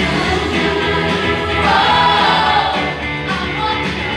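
A large mixed choir of men and women singing a song in harmony, with a held note swelling to the loudest point about two seconds in.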